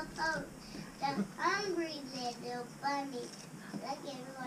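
A young child's voice singing short phrases, with long notes that glide up and down in pitch.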